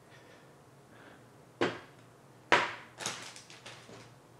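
Two jars of ink set down one after the other on a desk: two sharp knocks about a second apart, followed by a short run of lighter clicks from things being handled.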